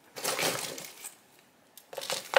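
Small trinkets and charms in a cardboard box clinking and rattling as a hand rummages through them, a dense clatter for about a second, then a few light clicks near the end.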